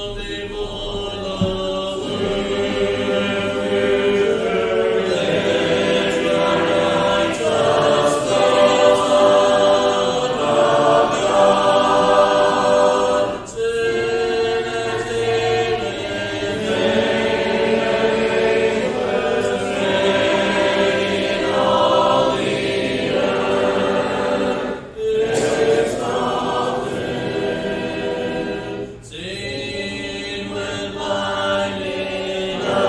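Congregation singing a hymn a cappella, many voices together, with brief pauses between lines.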